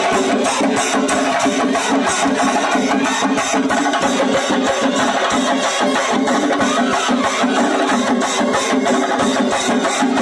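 Brass band with trumpets playing a melody together with a group of Kerala chenda drums beating an even, driving rhythm, in a band-and-chenda fusion.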